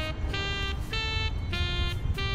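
Jazz film score: a saxophone playing a melody of short held notes that step up and down in pitch, over a steady low drone.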